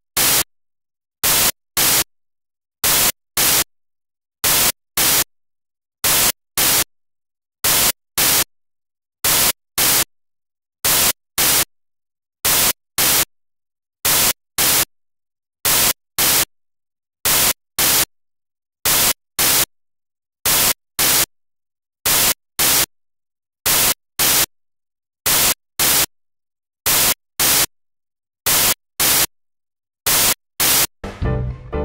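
Short bursts of loud static hiss coming in pairs, a pair about every second and a half, with dead silence in between. It is the noise of a lost or corrupted broadcast signal, heard while the picture shows only a blank gray screen.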